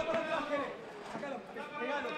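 Indistinct voices of spectators: chatter and calls from the crowd, fainter than the commentary around it.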